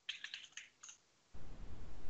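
Typing on a computer keyboard: a quick run of key clicks in the first second, then a brief low rumble about one and a half seconds in.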